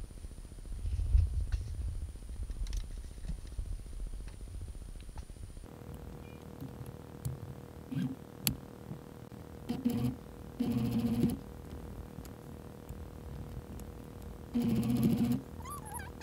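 Domestic sewing machine stitching gathered fabric in several short runs of under a second each, all in the second half. Before that, low handling noise as the fabric is moved about.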